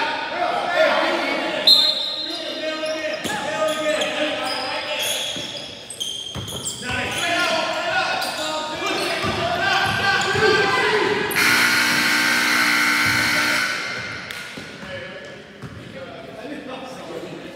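Basketball dribbling and bouncing on a hardwood gym floor among players' and spectators' shouts, with the echo of a large gym. About eleven seconds in, the scoreboard buzzer sounds for about two and a half seconds as the game clock runs out, then cuts off.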